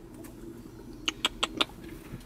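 A guinea pig in hay and straw: a quick run of about five crisp crackles a little after a second in, over faint background noise.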